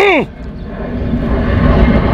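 A man's word trails off, then a low engine-and-road roar of a passing motor vehicle grows steadily louder.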